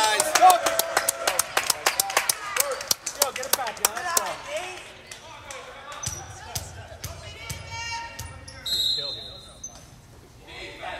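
Volleyball players clapping rapidly and shouting after winning a point, dying down after about four seconds. A short referee's whistle blast comes near the end, the signal for the next serve.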